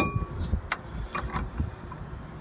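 Sharp metallic clicks and taps of brake parts being handled while a bolt is lined up into its hole: one loud click at the start, then a few fainter ones about a second later.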